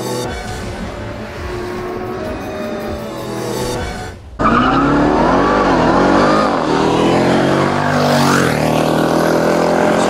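Background music for about four seconds, then the supercharged 6.2-litre V8 of a Jeep Grand Cherokee Trackhawk cuts in loud under hard acceleration, its revs sweeping up and down, with a sharp drop and climb near the end.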